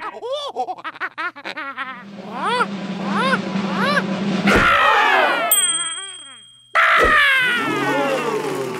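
Comic cartoon sound effects: a run of bouncy boings that rise and fall, then a thump and a sweep of falling glides with a high ringing tone. The sound cuts off suddenly, and a second thump and more falling glides follow.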